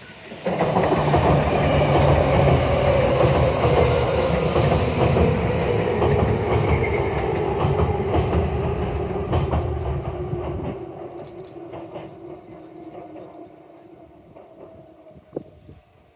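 Tobu 10030-series electric train crossing a steel girder railway bridge: a loud rumble with clickety-clack of the wheels starts suddenly about half a second in. The low rumble cuts off about eleven seconds in and the rest fades as the train recedes, with a tone that slowly falls in pitch throughout.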